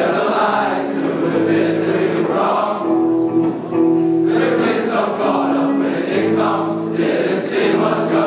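Large group of mostly male teenage voices singing together as a choir, holding long notes that change pitch together every second or so.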